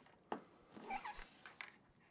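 A metal watch bracelet clicks against a tabletop as the watch is picked up, with one sharp click near the start. About a second in there is a short high squeak.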